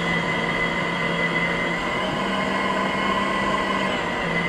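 Steady whine of small electric motors: several high tones held over a hiss, with a slight rise in pitch about two seconds in.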